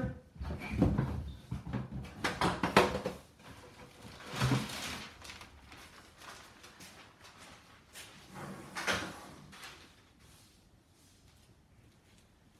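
Handling noises as a sheet of plastic is fetched: a run of knocks and clatters in the first three seconds, then two short rustling bursts, about four and a half and nine seconds in.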